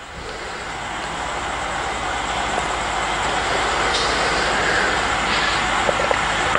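Steady rushing noise that grows louder over the first few seconds and then holds level, over a low steady hum.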